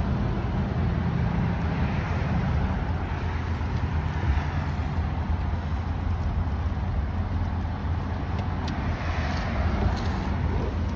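Steady low rumble of a running motor vehicle, with an even hiss over it.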